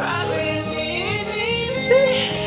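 Acoustic pop cover: a male voice singing with slides between notes over acoustic guitar.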